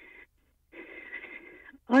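A person's breath heard over a telephone line: a short breathy sound, then a longer one of about a second, before a voice starts near the end.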